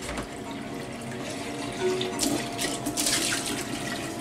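Kitchen tap running into the sink while a bowl is rinsed by hand, with a couple of short, sharper sounds about two and three seconds in.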